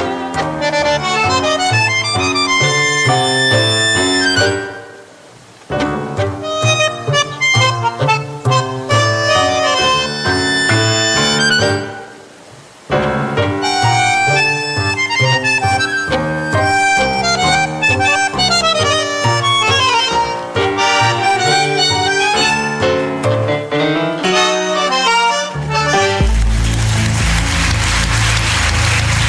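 Argentine tango music led by bandoneón, in clipped staccato phrases, broken by two short dramatic pauses about five and twelve seconds in. Near the end the music stops and gives way to a wash of noise.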